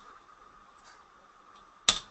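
A single sharp click of a computer mouse button near the end, over quiet background hiss.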